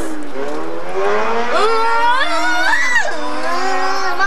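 A person's voice in one long, unbroken drawn-out cry, gliding up in pitch and dropping near the end, amid laughter.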